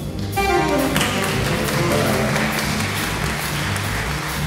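Live jazz band in the hard-bop style: saxophone and trombone sound a phrase that falls in pitch near the start, over upright bass, drums and piano playing on steadily.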